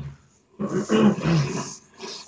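A person coughing harshly, one rough, raspy burst lasting about a second that begins just over half a second in.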